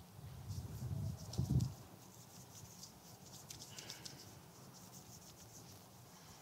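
Muffled low bumps, loudest about a second and a half in, followed by light rustling and small clicks.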